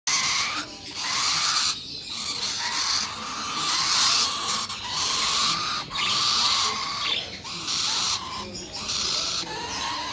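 Young parrot being held, giving harsh, rasping calls over and over in runs of about a second with short breaks between them.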